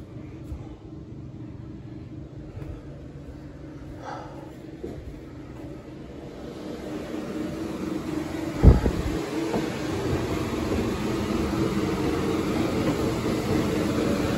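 A portable blower fan's steady hum, growing louder over the second half, with footsteps on wooden stairs and one loud thump a little past the middle.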